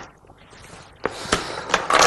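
Quiet room at first, then from about a second in a soft rustle with three or four sharp clicks of Go stones being placed and handled on a large demonstration board.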